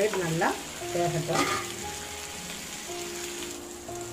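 Fish pieces sizzling as they shallow-fry in oil on a flat tawa, with a steel spatula scraping and turning them in the first moments.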